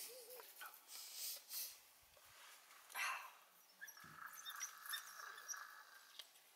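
Faint calls of African wild dogs, with a few short rustling bursts, the loudest about three seconds in.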